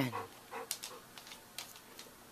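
Faint sounds of dogs moving close by: a few light clicks and soft rustling.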